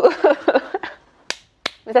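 A woman laughing briefly, then two sharp finger snaps about a third of a second apart.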